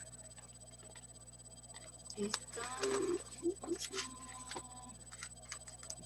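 Quiet background of an online video call: a faint, indistinct voice in the middle, a few small clicks, and a brief steady tone lasting about a second a little before the four-second mark.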